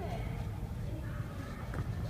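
Indoor background noise: a low steady hum with faint voices murmuring in the distance.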